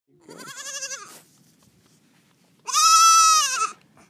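A baby goat bleating twice: a short, quavering bleat, then a louder, longer one with a wavering pitch a couple of seconds later.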